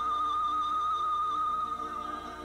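Opening theme music: a lead melody holds one long high note with a slight waver, over softer sustained accompaniment.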